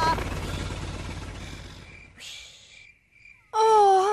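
Cartoon helicopter flying away, its rotor noise fading out over about two seconds and leaving faint crickets. Near the end a character's voice holds a short drawn-out vowel.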